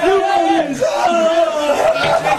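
A group of voices chanting in long, drawn-out tones that slide up and down in pitch.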